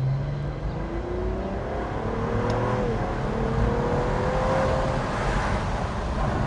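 Cadillac ATS-V twin-turbo V6 in the 1948 Cadillac coupe body accelerating under load: its pitch rises, drops about three seconds in as the eight-speed automatic shifts up, then rises again.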